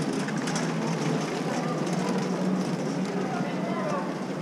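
Busy airport terminal concourse: a steady hum of many voices talking at a distance, with a few light clicks of footsteps.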